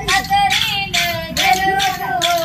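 A group of women singing a traditional Adivasi bhondai song together in unison, in high voices, the melody held and bent from syllable to syllable.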